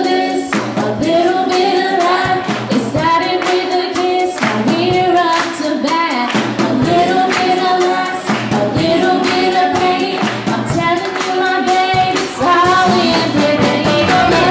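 Woman singing a song live with a band, backed by electric guitar and a drum kit keeping a steady beat. The sung lines are long held notes with vibrato.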